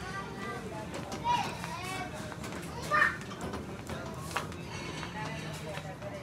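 Shop ambience: chatter of other shoppers, children's voices among it, over music. A brief loud high-pitched voice stands out about three seconds in, and a short click follows a little over a second later.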